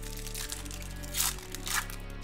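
Clear plastic wrapper on a trading-card pack crinkling as hands tear it open, with two sharper crinkles about a second in and near the end, over steady background music.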